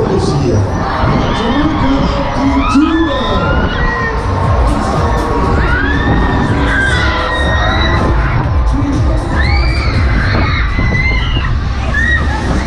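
Riders on a Break Dance spinning fairground ride screaming and whooping while it runs: many high, rising-and-falling cries overlap throughout, over a steady low rumble.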